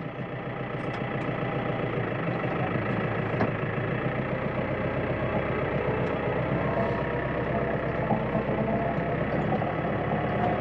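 Case IH tractor's diesel engine just started and running at idle. The sound builds over the first couple of seconds, then holds steady, heard from inside the cab.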